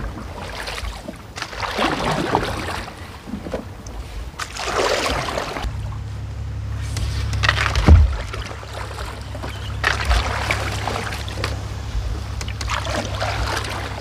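Wooden canoe paddle strokes in lily-pad-covered water: a splashing swish every two to three seconds, with one sharp knock a little past halfway. A steady low rumble runs under the second half.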